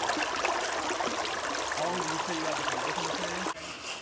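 Water rushing steadily over a running sluice box's riffles in a creek, cutting off suddenly about three and a half seconds in. Faint voices can be heard in the background.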